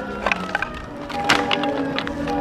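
A wooden skateboard deck cracking and splintering, with a few sharp clacks of wood hitting asphalt, over background music.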